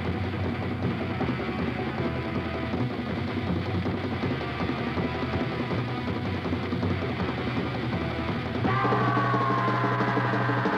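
Lo-fi punk rock band playing with drums, from a 4-track basement recording dubbed from cassette, so it sounds dull and muffled. About nine seconds in it gets a little louder and a long held low note comes in.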